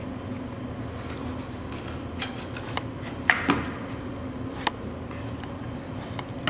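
Scissors cutting through a sheet of cardboard: several crisp snips at irregular intervals a second or so apart.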